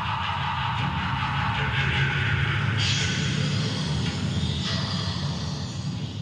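A steady, loud, low rumbling roar with a hiss over it. The hiss brightens about three seconds in and eases toward the end.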